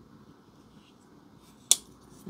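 CJRB Scoria folding knife's blade snapping into place with one sharp metallic click near the end.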